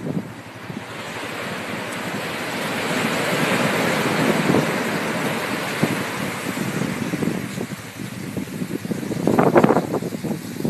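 Ocean surf washing up a sandy beach: a wave's rush swells over the first few seconds and slowly fades, with a short louder burst near the end.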